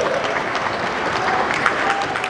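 Audience clapping in a gymnasium, with a few voices mixed in.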